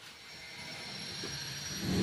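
Steady rushing background noise that slowly swells in level, with a faint, thin high-pitched whine over it.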